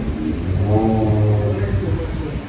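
A low voice holding one drawn-out note for about a second, over steady background noise.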